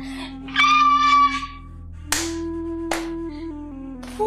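Somber background music with a held low note. Over it, a woman's high, wavering crying wail comes about half a second in, followed by two sharp sobbing gasps around two and three seconds in.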